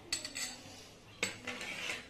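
Stainless steel plate and kitchen utensils clinking, with a sharp knock near the start and another just after a second in, each ringing briefly.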